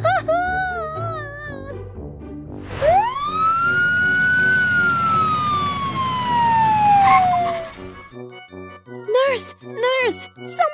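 Ambulance siren sound effect: one wail that rises quickly, then falls slowly over about five seconds, over light children's background music. A short wavering, warbling tone comes first.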